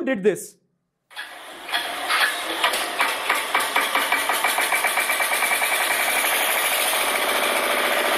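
Engine sound effect dubbed onto a meme clip: an engine cranking and catching, its steady putter quickening, as a handshake pumps like a starter and smoke bursts out.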